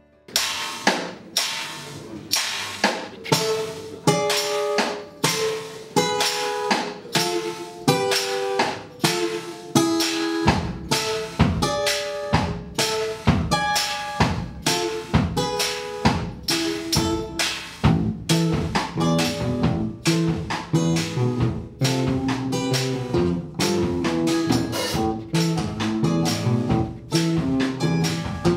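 A live rock band playing: a drum kit keeping a steady beat under acoustic guitar notes, with bass coming in about ten seconds in. The music starts abruptly. It is an amateur live recording that the uploader says badly mangled the sound.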